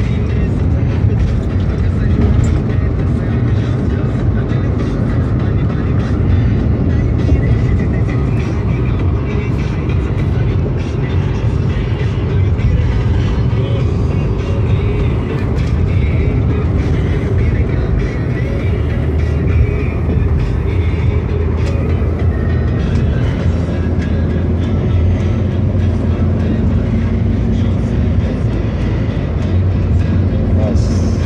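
Steady low rumble of engine and tyre noise inside a Toyota car's cabin as it drives at highway speed, with music playing over it.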